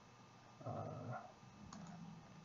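A man's drawn-out hesitant "uh", followed about a second later by a faint single mouse click.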